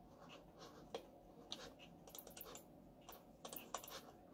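Faint, scattered clicks of a computer mouse, about half a dozen irregular clicks over a few seconds, against near-silent room tone.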